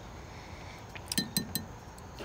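Four or five quick, ringing clinks against the glass jar of pickled quail eggs, about a second in.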